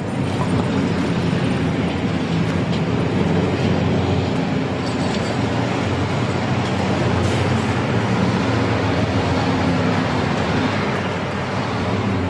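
Engines of several large trucks running steadily, a continuous heavy traffic noise.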